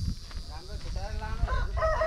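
Chickens calling, short wavering calls followed near the end by the start of a rooster's long crow.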